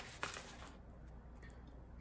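Quiet room tone with a low steady hum, and a couple of faint short rustles near the start as sandwiches are handled.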